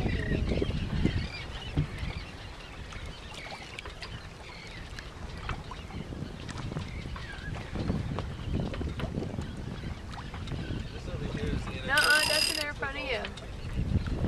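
Wind and water noise aboard a sailboat under way, a steady low rush with faint voices in the background. About twelve seconds in comes a brief, loud, high-pitched cry from a person.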